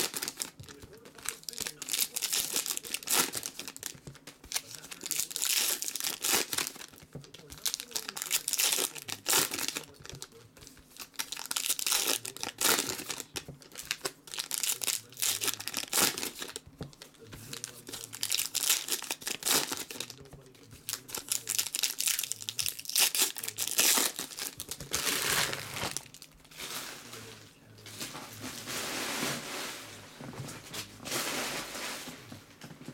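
Foil wrappers of Panini Contenders football card packs crinkling and tearing as the packs are ripped open and the cards pulled out by hand, in irregular bursts.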